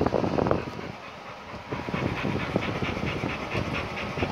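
Pit bull panting hard after exercise: quick, even breaths, about five a second, clearest in the second half. A louder, close rush of breath at the very start.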